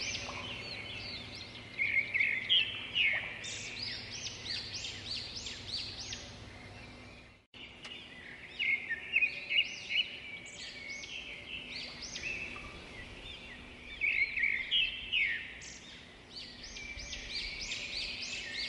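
Small birds chirping and singing outdoors: quick, high repeated notes coming in busy bursts. There is a brief break about halfway through.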